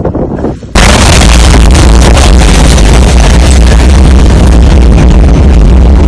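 The blast wave of a huge explosion arrives about a second in: a sudden, very loud boom that overloads the microphone. It carries on as a steady, distorted, bass-heavy roar.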